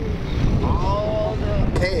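Steady low outdoor rumble with a short, quiet spoken reply about halfway through and a man's voice at the very end.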